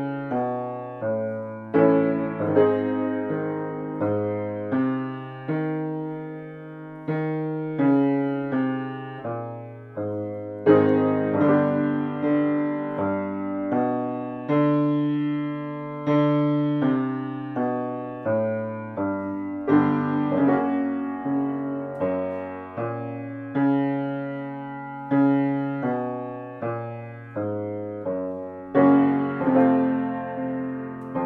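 Grand piano playing the accompaniment to a vocal warm-up exercise: a short pattern of struck chords and notes, each fading away, repeated every few seconds.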